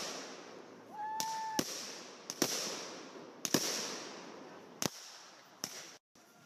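Fireworks going off in a show: a sharp bang at the start, then a whistle that rises and holds for about half a second before ending in a bang. About five more bangs follow over the next few seconds, each trailed by a hiss.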